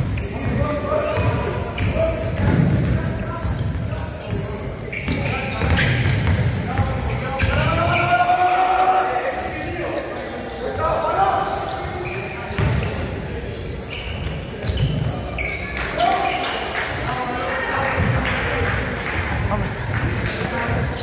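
Basketball bouncing on an indoor court during live play, with players' and spectators' shouts and calls echoing around a large gym.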